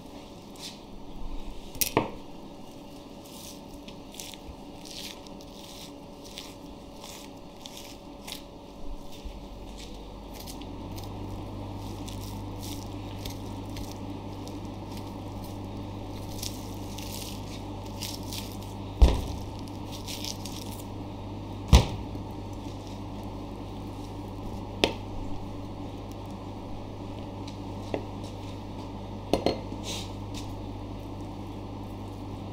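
A knife cutting and trimming a block of raw beef sirloin on a plastic cutting board: short strokes through fat and meat, with several sharp knocks on the board. A steady low hum comes in about ten seconds in and continues.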